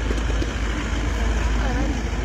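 Indistinct voices of an outdoor crowd over a steady low rumble.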